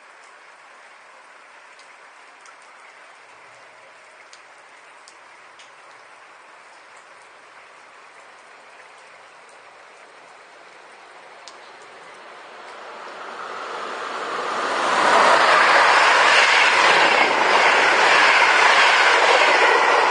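A Siemens Krauss-Maffei class 120 'HellasSprinter' electric locomotive with its train approaching and passing at speed. After a quiet stretch with a few faint ticks, the rush of wheels on rails builds from about twelve seconds in and is loud through the last five seconds.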